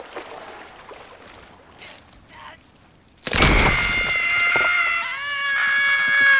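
Soft lapping water, then about three seconds in a sudden loud crack of breaking ice, followed by a cartoon squirrel's long, shrill cry that shifts pitch partway and bends upward at the end.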